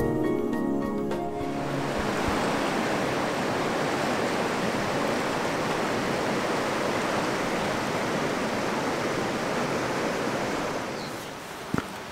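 Music fading out in the first second or two, then a steady rush of flowing river water. The rush drops away near the end, where a sharp click is heard.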